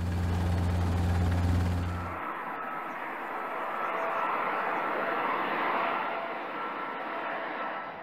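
A helicopter's steady low drone for about two seconds. It then cuts abruptly to an Airbus A380 jet airliner on landing approach: a steady rushing engine noise with a faint high whine, swelling slightly and easing off near the end.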